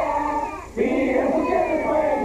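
Several voices singing together in a wavering, held line. The singing drops away briefly just before a second in, then resumes.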